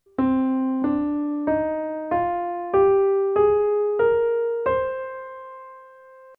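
A C minor scale played upward on a KORG Pa600 keyboard's piano sound: eight notes from middle C to the C an octave above, a little under two notes a second, with the top note held and dying away. It is the sad-sounding minor scale set against the major scale.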